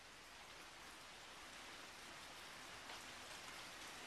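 Recorded rain: a faint, steady hiss of falling rain with a few scattered drops, slowly growing louder.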